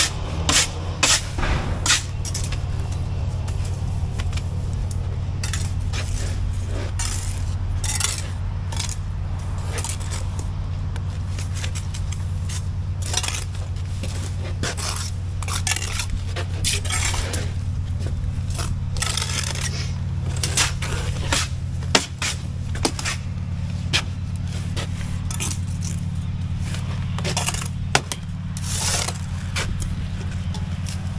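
Steel bricklaying trowels scraping mortar off boards and spreading it on concrete blocks: many short scrapes and metallic clinks over a steady low mechanical hum.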